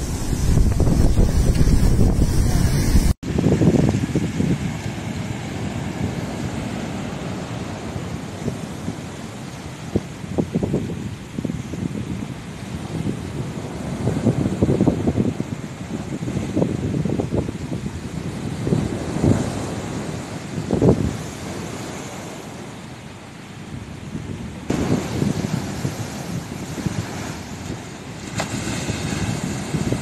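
Cyclone wind buffeting the microphone over heavy surf crashing against a concrete sea wall. Gusts and wave crashes swell and fade every second or two, with a brief break about three seconds in.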